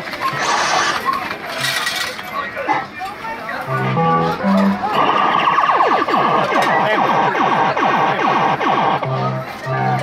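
Fruit machine electronic sound effects: a few short bleeping notes, then from about five seconds a held siren-like tone with rapid falling sweeps that stops shortly before two more bleeps.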